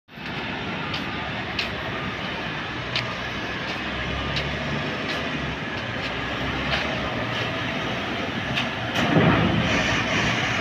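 Volvo A40G articulated dump truck's diesel engine running as the truck drives, with a faint click about every 0.7 seconds. It grows louder with a deeper rumble about nine seconds in as the truck comes closer.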